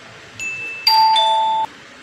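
Subscribe-button overlay sound effect: a short high beep, then a loud two-note ding-dong notification chime, the second note lower, both cutting off suddenly after under a second.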